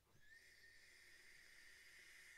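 Faint, steady thin whistle with a light hiss from a long draw on a vape pen (e-cigarette), starting shortly in.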